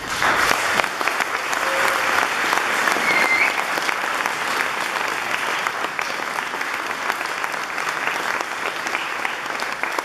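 Audience applauding, breaking out suddenly and then continuing steadily, a little softer after the first few seconds.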